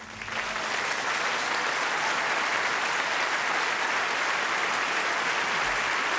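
Concert audience applauding. The applause breaks out as the band's last note dies away and within the first second builds to steady clapping, which holds level.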